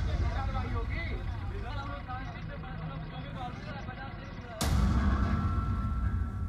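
Deep cinematic boom sound effects. A boom's rumble decays over the first seconds, and a second sudden hit lands near the end, followed by a thin high ringing tone.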